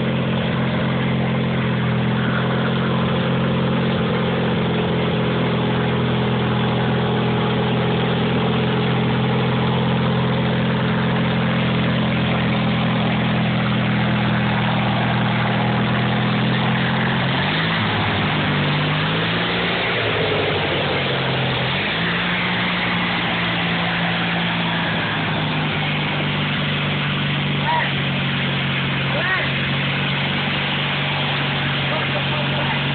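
Westwood garden tractor's engine running steadily while driving through mud. About halfway through, its note dips and wavers for a few seconds as it labours in the mud, then steadies again.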